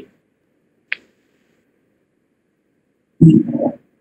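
Silent call audio broken by one short click about a second in, then a brief low vocal sound from a man near the end, like an 'eh' before speaking.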